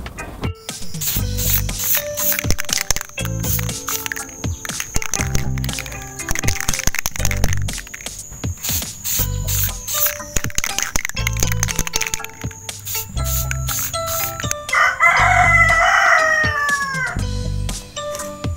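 Background music with a steady beat. Near the end, a rooster crows once: a call of two to three seconds that falls in pitch as it closes.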